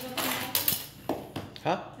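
Serrated bread knife scraping and chipping at a block of clear ice, shaving off its jagged edges: a few short scrapes in the first second.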